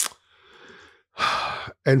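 A person's breathing between phrases: a short click, a faint breath out, then a louder breath in just before speaking.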